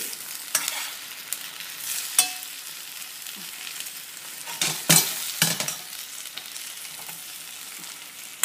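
Snow peas and ham sizzling in hot oil in a cazuela as they are sautéed and stirred: a steady frying hiss with several sharp scrapes and knocks of the utensil against the pot, loudest about five seconds in.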